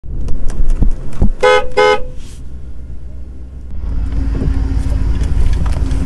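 A vehicle horn toots twice in quick succession about a second and a half in, over the low steady rumble of a vehicle idling.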